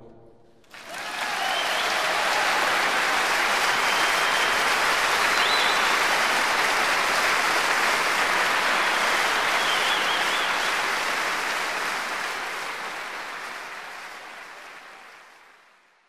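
Concert audience applauding, breaking out about a second in after the band's final chord has died away, then fading out near the end.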